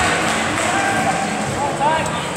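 Background chatter of voices echoing in a large sports hall, with a few distant voices rising out of it in the second half.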